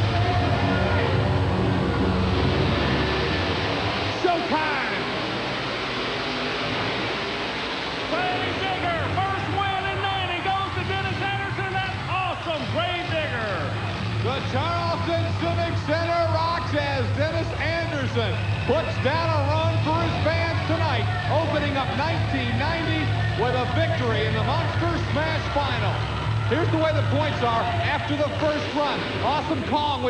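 Two monster truck engines running with a steady low drone while music fades out over the first seconds. From about eight seconds in, crowd voices shout and cheer over the engines as the trucks race.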